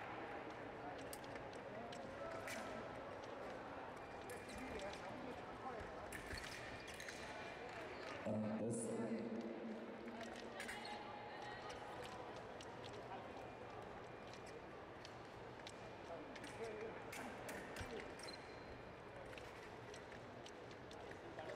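Foil bout on a fencing piste: scattered sharp clicks and thumps of footwork and blade contact over a steady background of arena chatter. About eight seconds in comes a louder held, pitched sound of about a second and a half, near a lunge.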